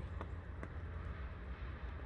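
Low, steady rumble of wind, with a few faint ticks.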